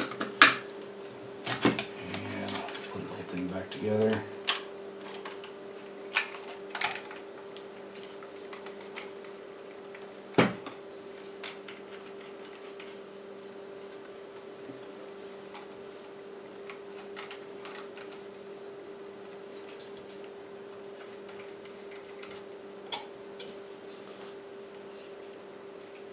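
AA batteries snapped into a KX3 transceiver's battery holder and its plastic case handled and closed: a series of clicks and knocks, the loudest about ten seconds in, then sparse faint ticks over a steady low hum.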